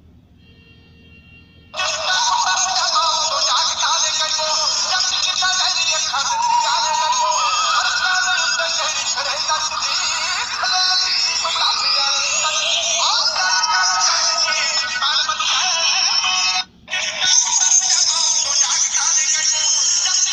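A song with singing and backing music played through a JioPhone's small loudspeaker, sounding thin with no bass. It starts about two seconds in, drops out for a moment near the end, then runs on.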